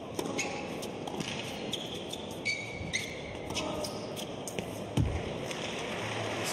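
Tennis rally on an indoor hard court: sharp racket-on-ball hits and ball bounces, with a few short shoe squeaks, and a heavier thump about five seconds in.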